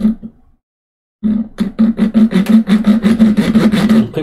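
Fine-toothed razor saw cutting across a small wooden rail: a brief scrape at the start, then from about a second in quick, even back-and-forth sawing strokes as it cuts a shallow slot about half a millimetre deep.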